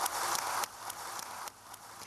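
Brief patter of applause in a large hall, dropping off after under a second to faint room noise with a few scattered claps.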